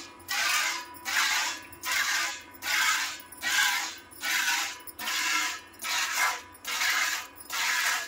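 Jets of milk squirted by hand from a cow's teats, hissing into a stainless-steel pail in a steady rhythm of about two squirts a second.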